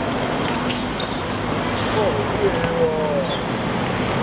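Athletic shoes squeaking on a hard court during a football match, with a cluster of short sliding squeaks about two to three seconds in, over players' voices and steady background noise.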